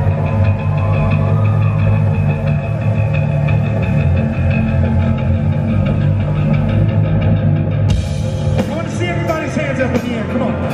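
Live rock band playing loud over a PA, with heavy, steady bass at the bottom of the sound. About eight seconds in, brighter cymbal-like high end comes in sharply, and a voice joins near the end.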